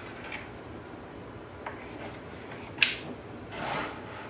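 Kitchen knife drawn through a tray of set besan halwa topped with chopped almonds, marking slice lines: quiet scraping, with one sharp click about three quarters of the way through and a short scrape just after.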